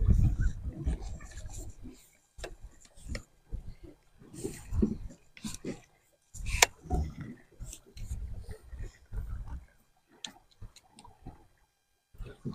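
Wind buffeting an action-camera microphone in irregular gusts on a boat, with scattered clicks and knocks of handling. A sharp click about six and a half seconds in is the loudest.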